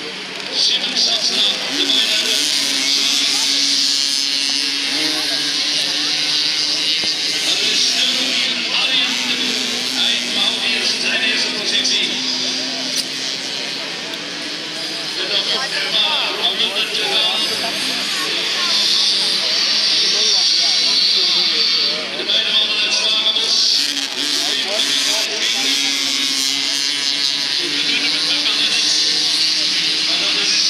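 Racing mopeds' small two-stroke engines running hard as they lap the grass track, their pitch rising and falling as riders accelerate and ease off.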